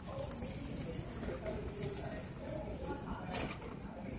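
Faint sound of a loaded metal shopping cart rolling on a tiled supermarket floor, over low store background noise.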